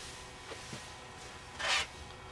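Hands smoothing layered fabric strips flat across a cutting mat: faint small taps, then one short rubbing swish of cloth over the mat near the end.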